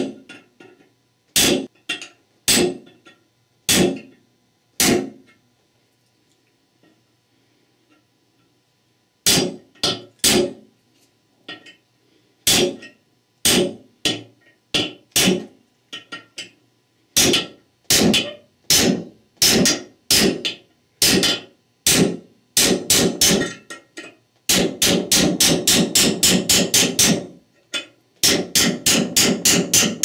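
A hammer striking a steel punch set against the old extension housing bushing in a Chrysler 46RE transmission's aluminum extension housing, collapsing the bushing and driving it out. Single sharp blows about a second apart, a pause of a few seconds, then steady blows that turn into fast strings of blows near the end.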